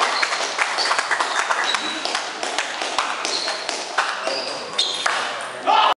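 Table tennis balls clicking and pinging on tables and bats at irregular intervals, with voices talking around the hall and a louder burst just before the end.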